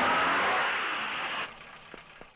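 Hindustan Ambassador car driving up a dirt driveway: a rushing noise of the car's movement that fades down about a second and a half in.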